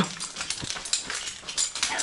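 Hurried footsteps on a mine tunnel floor with climbing hardware (carabiners and gear hanging from a harness) jangling and clinking at each step, along with hard breathing from running.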